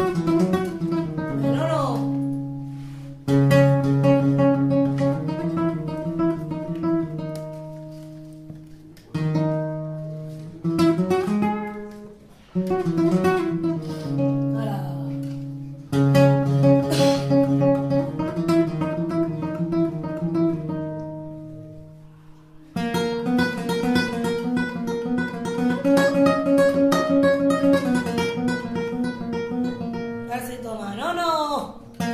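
Flamenco acoustic guitar playing in the seguiriya style, with sharp strummed chords struck every few seconds and left to ring and die away between runs of plucked notes.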